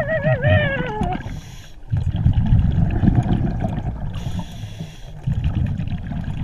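Underwater scuba breathing: the regulator's exhaled bubbles rumble and gurgle for several seconds, with a brief hiss of inhalation. In the first second a muffled, wavering hum falls in pitch.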